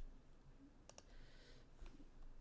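Near silence with a quick double click of a computer mouse about a second in and a fainter click near the end.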